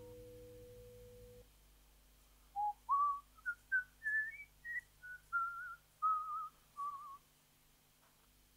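A sustained held chord dies away and cuts off, then a person whistles a short tune of about a dozen wavering notes that climb and then fall back.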